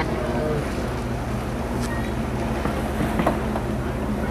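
Offshore go-fast powerboat's engines running at speed, a steady low drone over the rush of water.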